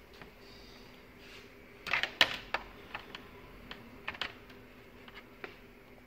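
Several sharp plastic clicks and knocks, the loudest cluster about two seconds in, with a few lighter clicks after: a power cord's plug being handled and pushed into its socket on a TV power supply board.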